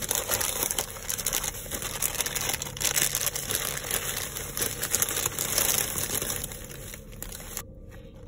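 Plastic shopping bag and cellophane toy packaging crinkling and rustling as a hand rummages through it, a dense crackle that eases off near the end.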